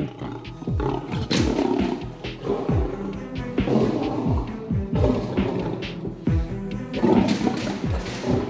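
A white lion calls again and again in its holding cage, each call falling in pitch. It is agitated and wants to get out. Background music plays underneath.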